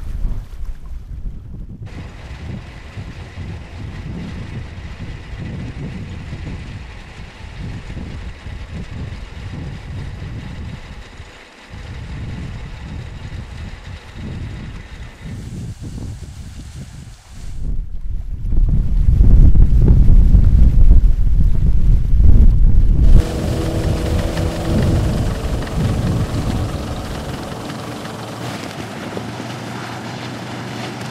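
Wind buffeting the microphone through most of it, loudest for a few seconds about two-thirds in. In the last few seconds the outboard engine of a rigid-inflatable rescue boat is heard running with a steady hum.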